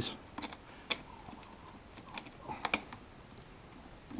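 Small metal clamps on wire leads clicking and tapping as they are fitted onto a deep-cycle battery's terminals. There is a pair of sharp clicks about half a second in, another near one second, and a quick cluster of clicks in the latter half.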